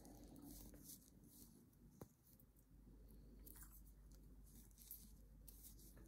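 Near silence: faint handling sounds of metal knitting needles and yarn being worked, with one light click about two seconds in.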